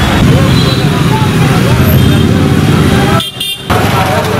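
Loud outdoor ambience of a crowd talking over road traffic, with short car horn toots. The sound briefly drops out near the end.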